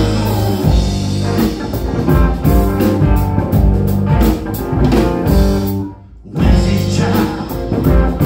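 Live blues-rock trio playing: electric guitar, electric bass and a DW drum kit. The band stops together for a short break about six seconds in, then comes straight back in.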